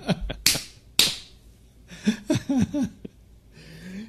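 Two sharp hits about half a second apart, each trailing off in a hiss, the second hiss longer, followed by a man's short bursts of laughter.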